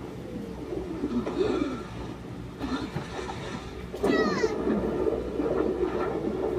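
Laughter from a man and a boy playing a hand game, with a louder burst of laughing about four seconds in, over a steady low hum.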